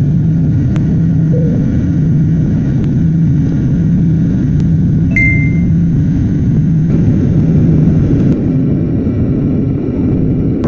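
Jet airliner cabin noise during takeoff and climb: a loud, steady engine rumble heard from inside the cabin. A short high beep sounds about five seconds in.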